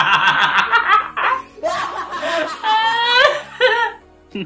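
Hearty, loud laughter in quick repeated bursts, with a higher-pitched rising laugh about three quarters of the way in.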